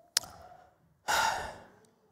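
A man sighs: a short mouth click, then about a second in a single loud exhale that fades out over about half a second.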